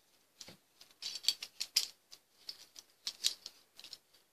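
Plastic pom-pom maker clicking and rattling in the hands as yarn is wound around its arm: a run of irregular light clicks.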